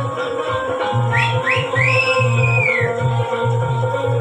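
Loud dance music with a steady bass beat. About a second in come a few high whistle-like glides: two short rising ones, then a longer one that rises, holds and falls.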